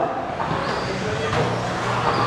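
Electric 1/10-scale RC stadium trucks racing on an indoor dirt track: a steady mix of high motor whine and tyre noise, with faint high whines coming and going as cars pass.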